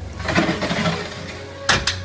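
Glass sliding door being pulled shut along its track: a rolling rush, then two sharp knocks close together near the end as it meets the frame.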